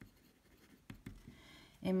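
A pen writing a word by hand on paper: faint scratching strokes with a few light ticks. A voice starts near the end.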